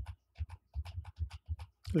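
A quick, irregular run of soft clicks and light knocks, about six a second.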